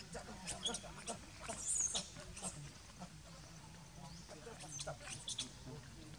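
Young macaque giving short, high squeaks, the loudest about two seconds in, with scattered clicks around them.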